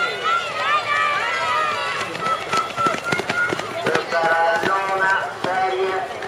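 Spectators shouting encouragement to sprinters in high, repeated overlapping calls. A run of sharp taps comes in the middle, and one long drawn-out shout follows near the end.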